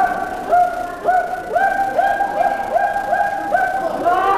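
Music: a single pitched note repeated about eight times in a quick, even rhythm, each note sliding up slightly as it starts.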